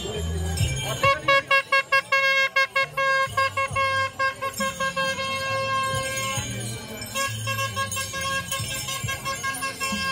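A vehicle horn sounding in a quick run of short toots, then held in long blasts.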